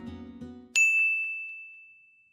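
The end of a strummed acoustic guitar tune fading out, then a single bright bell-like ding about three-quarters of a second in, its clear tone ringing and slowly dying away.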